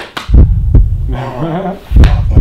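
Heavy low thuds of hands patting backs during close hugs, very near the microphone, several in quick succession. A short pitched voice sound comes in the second half.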